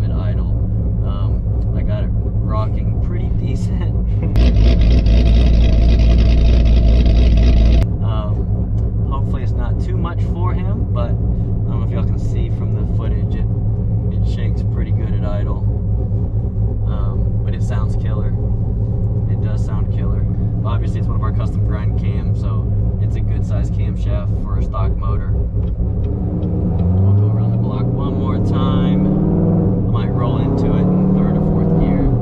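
Supercharged 6.2 L LT4 V8 of a C7 Corvette Z06, heard from inside the cabin running steadily while driving. A sudden louder, hissier stretch starts about four seconds in and cuts off about three seconds later. Near the end the engine revs up, rising in pitch.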